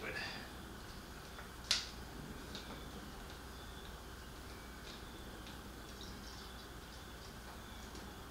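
Quiet room tone with a steady low hum, one sharp click about two seconds in and a few faint ticks after it: small handling sounds from a drain valve and plastic tubing as liquid is let out of a separator jug.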